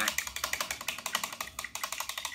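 A fast, even run of light clicks, about a dozen a second.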